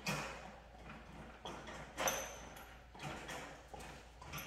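A dog's paws knocking and scraping on a wire crate as it reaches up for a bone, with a few light metallic rattles: one at the start, one about two seconds in and a smaller one about three seconds in.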